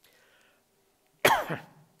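A man's short cough about a second and a quarter in.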